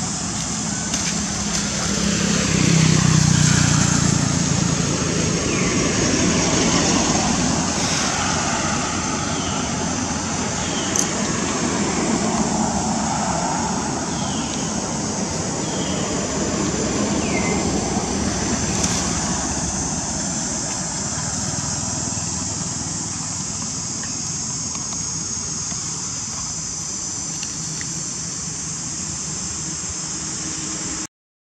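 Outdoor ambience: a low engine-like hum, as of passing road traffic, swells around three seconds in and then eases, over a steady high-pitched drone. A few short chirps come in the first half.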